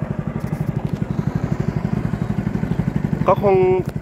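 A small boat's engine running steadily under way, with a rapid, even low beat.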